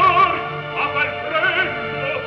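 An operatic voice singing held notes with vibrato over sustained orchestral accompaniment, in a 1954 live opera-house recording with a dull, treble-less old-recording sound.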